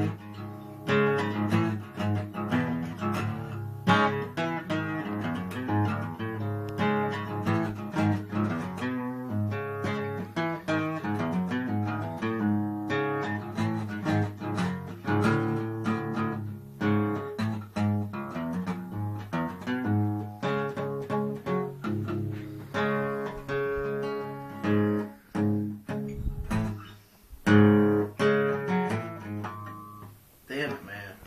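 Acoustic guitar in drop D tuning playing a riff-based tune of picked notes and strummed chords, with a few short breaks near the end.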